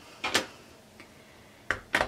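Stamping tools being set down and positioned on a cutting mat: two quick plastic knocks just after the start, a faint tick about a second in, and another knock near the end.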